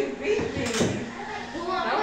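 Faint voices in a quiet room over a low steady hiss, with one short knock a little under a second in.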